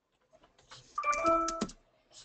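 A short two-note electronic chime, a higher note followed by a lower one like a doorbell's ding-dong, about a second in.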